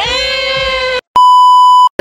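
A drawn-out, high voice-like sound that rises into a steady held note and stops about halfway through, followed after a brief gap by a loud, steady electronic bleep lasting under a second, the kind used to censor a word.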